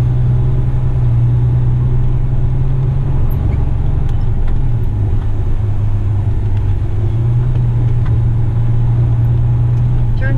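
Western Star truck's diesel engine heard from inside the cab, running steadily as the truck drives slowly: a deep, loud drone that dips slightly in pitch about five seconds in and comes back up a couple of seconds later.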